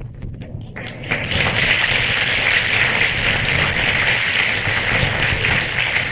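Live audience applauding. The clapping swells in about a second in and carries on steadily.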